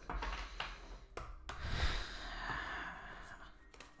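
Tarot cards being handled and slid against each other as the deck is fanned out: a soft rustle that swells about a second and a half in and then fades.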